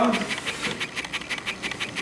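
A man's voice finishing a word, then a pause with low room noise in a lecture hall.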